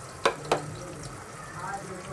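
Sliced onions and whole spices frying in hot oil in an aluminium pressure cooker, a steady sizzle, with two sharp knocks about a quarter and half a second in.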